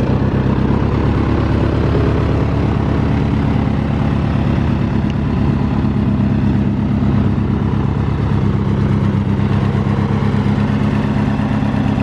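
Polaris Sportsman MV7 ATV engine idling steadily.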